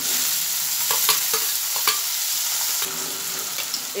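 Chopped tomato sizzling as it hits hot oil with peanuts and spices in a metal kadhai. The sizzle starts suddenly and eases a little near the end, with a few sharp clinks of a metal spoon stirring the pan about a second in.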